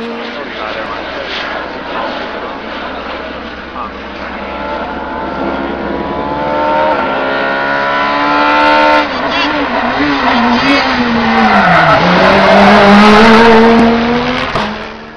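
Rally car engine at full throttle, approaching and growing louder, its pitch climbing in steps through upshifts about seven and nine seconds in. Near the end the revs drop briefly and pick up again as the car comes close and passes.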